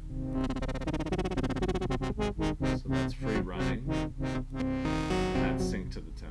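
Synthesizer pattern played through the Etch Red dual filter in Reason, its filter cutoff swept by an LFO: a fast rhythmic wobble that slows down over the first few seconds as the LFO rate is turned, then settles into a smoother pattern near the end.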